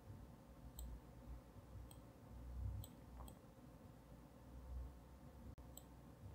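Near silence with a few faint, scattered computer mouse clicks over a low hum.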